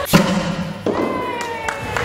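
A T-shirt cannon fires with a sharp compressed-air thump just after the start. Near the middle a long high tone follows, sliding slowly down in pitch.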